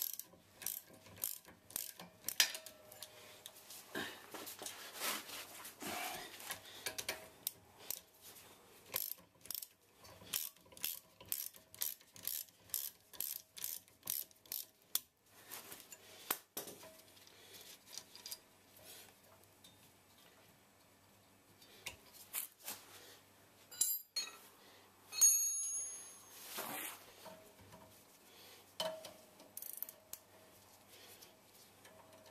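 Ratchet spanner clicking in runs as the brake caliper's guide pin bolts are wound out, while a second spanner holds each pin steady. A louder metallic clatter of tools rings out near the end.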